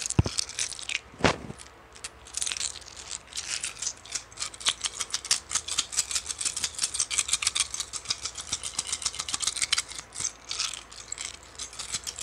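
Long acrylic fingernails clicking and tapping against each other in a fast, dense patter of sharp little clicks, after a couple of soft knocks in the first second or two.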